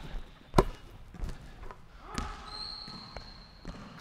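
Basketball bouncing on a hardwood gym floor: one sharp bounce about half a second in, then a few softer knocks spread out over the rest. A thin high squeal holds through the second half.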